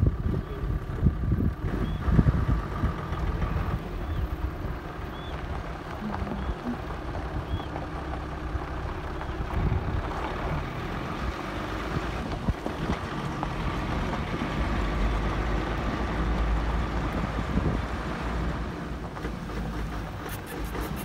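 Wind buffeting the microphone, giving an uneven low rumble that swells in gusts, with a safari vehicle's engine running underneath.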